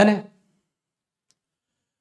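A man's voice ending a word, then near silence broken only by one faint click about a second in.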